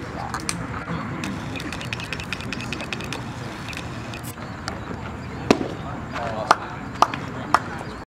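Indistinct voices and chatter of people at a baseball game. A sharp crack about five and a half seconds in, as the pitch reaches the plate, is followed by three more sharp knocks about half a second apart.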